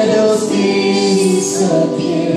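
A man and a woman singing a Christian worship song as a live duet, holding long notes, with acoustic guitar and keyboard accompaniment.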